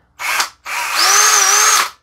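Ridgid 18V cordless drill running free under its trigger: a short blip, then a run of about a second with the motor whine rising as it spins up. It is powered by a battery pack that did not work before and now does, after corrosion was scrubbed off its circuit board.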